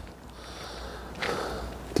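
Quiet outdoor background with a soft breath from the person filming, an exhale a little past a second in.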